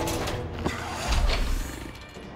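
Film sound effects: a sharp click, then a deep rumble that swells for about half a second just past the middle.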